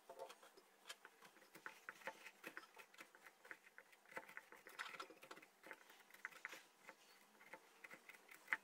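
A hand digging the wet, stringy pulp and seeds out of a hollowed pumpkin: a quiet, irregular run of small crackles and squelches, busiest about halfway through.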